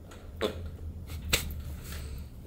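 A few short cracks from the spine as a chiropractor's hands thrust down on the mid back of a patient lying face down, the clearest about half a second in and another about a second later: joints cavitating during a thoracic adjustment. A faint low hum runs underneath.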